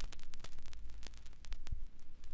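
Crackling static: irregular sharp clicks over a steady low hum.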